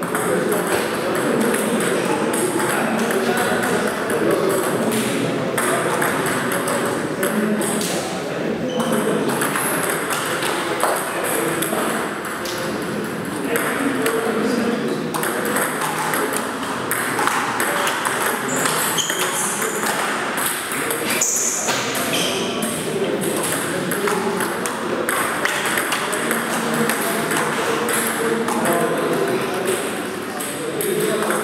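Table tennis play: a celluloid ball clicking sharply off rubber paddles and bouncing on the table, in short rallies. Voices chatter throughout, with further ball clicks from other tables around the hall.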